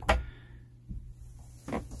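A single sharp click at the start, then faint handling: the locking lever of a Lagun table mount being worked to tighten and release the table arm.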